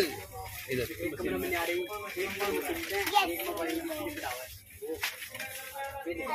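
Indistinct background talking from other people, with some music beneath it; no single sound stands out.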